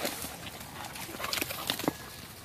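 A dog running out of the water through brush and over pine-needle ground: scattered footfalls and rustling, with a few sharper clicks near the end.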